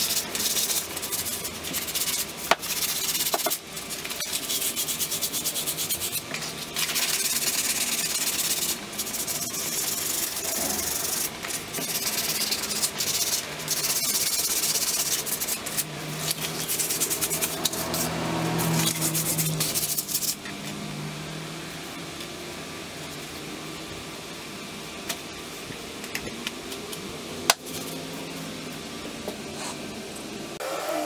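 Scratchy rubbing as the steel head of an old ball-peen hammer is scoured by hand with an abrasive, in long strokes broken by short pauses. The rubbing stops about two-thirds of the way through, leaving quieter handling with a couple of light clicks.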